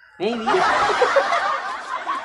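A man and a woman laughing hard together, a loud breathy burst of laughter that starts a moment in.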